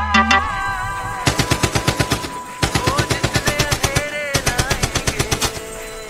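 Machine-gun fire sound effect mixed into a DJ remix: rapid shots at about ten a second in three bursts with short breaks, over held synth tones.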